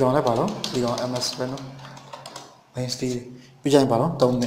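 A man talking in short phrases, with computer keyboard keys typed in the pauses between them.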